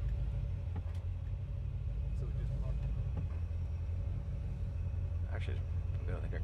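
1962 Ford Galaxie 500's V8 and dual exhaust, heard from inside the cabin, a steady low rumble as the car drives at low speed.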